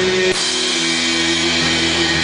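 Live rock band playing an instrumental passage: electric guitar and bass guitar over a drum kit, with long held notes and a change of chord about a third of a second in.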